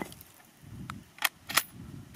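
The ringing tail of a rifle shot dies away, then three short metallic clicks come between about one and one and a half seconds in as the rifle's action is worked to clear it.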